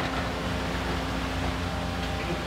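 JCB demolition excavator's diesel engine running steadily with a low hum, with one short sharp crack right at the start.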